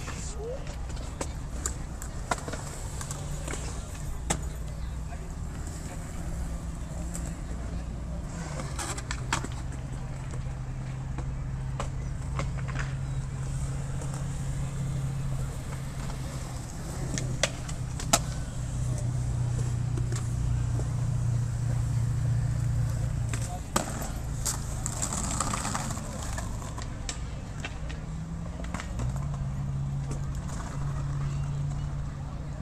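Skatepark sounds: skateboard wheels rolling on concrete and scattered sharp clacks of boards popping and landing, with a louder stretch of rolling a little past the middle. A steady low hum runs underneath.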